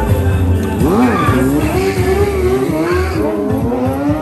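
Sport motorcycle engines revving up and down during stunt riding, with a sharp rise and fall in pitch about a second in, and tyre squeal on the pavement.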